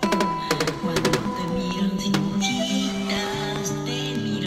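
Andean folk music: an acoustic guitar strummed in sharp chord strokes, several in the first two seconds, under held melody notes and a steady bass line.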